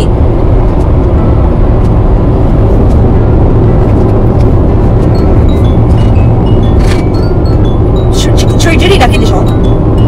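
Steady low rumble of road and engine noise inside a car cabin cruising at highway speed.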